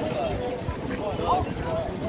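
Indistinct voices of paddleball players talking on an outdoor court, with a few soft knocks.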